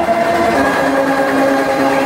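Dubstep DJ set over a club sound system, in a passage of sustained synth chords held steady without a clear drum beat.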